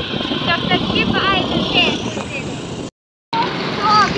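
Scooter riding through city traffic: steady engine and road noise, with a high voice repeating short, quick chirpy syllables over it. The sound cuts out completely for a moment about three seconds in.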